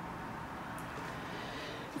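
Low, steady background noise with no distinct events: faint street sounds coming in through open balcony doors.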